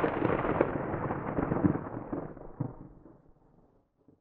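Edited-in transition sound effect: a sudden boom-like burst of crackling noise that dies away over about three seconds.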